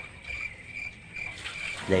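Insect chirping in the background: a short high note repeating a couple of times a second over a low, steady hum. Right at the end a cartoon voice and music cut in.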